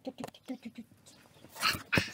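A child's voice making a quick run of short, soft blips in the first second, then a breathy burst of laughter near the end.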